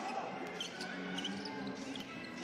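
A basketball being dribbled on a hardwood court, faint repeated bounces over the low murmur of an arena crowd.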